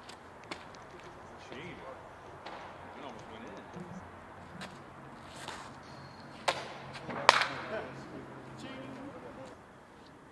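Sharp impacts of a thrown disc golf disc landing: two hard hits about a second apart, the second the loudest, ringing briefly.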